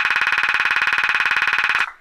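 A struck cymbal's attack caught in a DD-6 digital delay pedal's glitch loop: a tiny slice repeats many times a second as a loud, steady, even buzzing stutter, which cuts off shortly before the end as the pedal's trigger is released.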